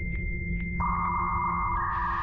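Dial-up modem connecting: a steady high answer tone with faint ticks about every half second, joined by a second, lower tone a little under a second in, and stepping to a new tone near the end, over a low hum.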